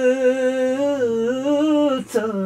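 A man singing unaccompanied, holding one long note that dips slightly in pitch and comes back up.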